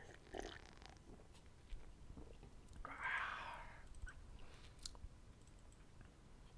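Faint sounds of a person drinking: sips and swallows, with a breathy exhale about three seconds in, and a few sharp clicks.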